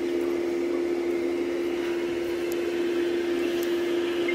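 Steady machine hum with one constant low tone, plus a few faint ticks.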